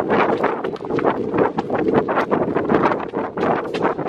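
Wind rushing over the microphone of a handheld camera that is carried at a run, a loud, rough rumble broken by many irregular knocks and jolts.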